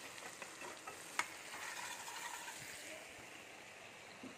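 Chunks of meat and potato frying in oil in a metal kadai, a steady sizzle, with a sharp click of the metal spatula against the pan about a second in.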